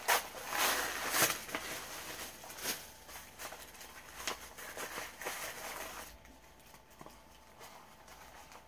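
Paper packaging rustling and crinkling in irregular bursts as a wrapped item is unwrapped by hand, loudest in the first few seconds and dying down after about six seconds.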